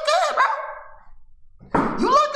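A man speaking into a close microphone, trailing off after about half a second; after a short pause he starts talking again with a sudden burst near the end.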